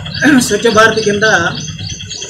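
A man's voice speaking, with birds chirping in the background.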